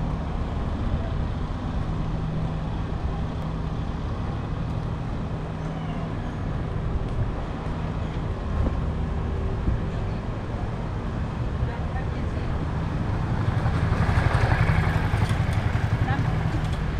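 Street ambience: a steady low engine hum of nearby traffic and voices of passers-by. A motor scooter grows louder near the end as it approaches.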